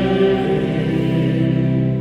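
Organ and choir holding a long, steady chord at the close of a sung piece, beginning to fade near the end.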